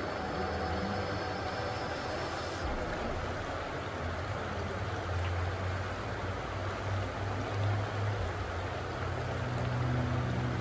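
Shallow river running over stones: a steady rush of water with a low rumble underneath.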